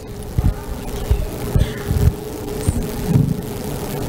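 A steady hum with a handful of short, low, muffled thumps scattered through it.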